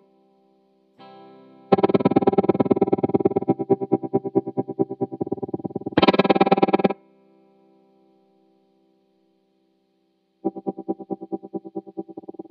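Overdriven electric guitar played through a Lightfoot Labs Goatkeeper 3 tremolo/step-sequencer pedal, chopped into fast, even pulses. Short phrases start and stop, with a louder burst about six seconds in and a gap of near silence before the pulsing comes back near the end.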